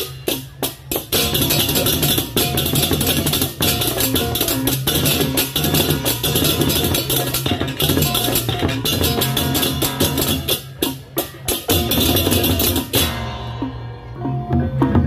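Balinese baleganjur gamelan playing loudly: crashing cengceng hand cymbals and kendang drums over steady low gong tones. There are sharp unison breaks in the first second and again about eleven seconds in. About a second before the end the cymbals drop out, leaving the lower gong tones.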